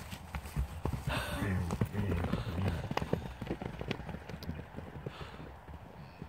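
Hooves of galloping horses and running cattle drumming on grass turf: a quick, uneven run of thuds that is loudest in the first half and thins out as the animals move away.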